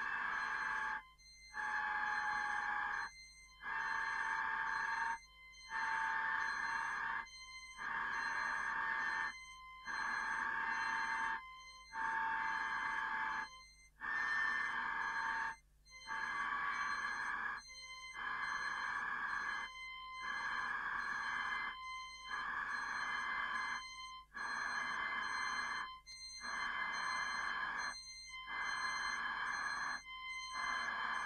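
Experimental electronic music: a buzzing, ring-like tone pulses on and off about once every two seconds, each pulse lasting about a second and a half, with faint steady high tones above it.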